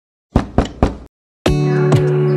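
Three sharp knocks in quick succession, then after a brief pause the song's music starts with a steady bass note and sustained chords.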